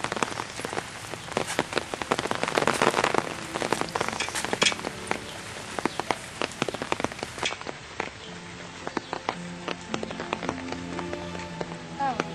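Rain falling, with a dense, irregular patter of drops on nearby surfaces, heaviest about two to four seconds in.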